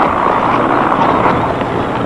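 South Vietnamese army helicopter overhead, heard in an old field recording as a steady rushing noise with no separate shots or blasts.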